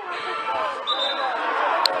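Background chatter of players' and spectators' voices, with a brief, thin, high whistle about a second in and a single sharp thump near the end, typical of a football being kicked.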